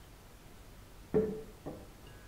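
Ceramic mug set down on a café table: two short knocks about half a second apart, the first louder with a brief ring.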